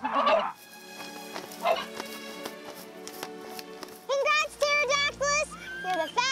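A harsh, squawking bird-like call from an animated Archaeopteryx, about half a second long, as it rears up with its beak open. It plays over background music with sustained notes.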